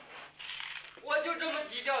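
A string of coins jingling as it is shaken, starting about half a second in, with a man's voice starting over it about a second in.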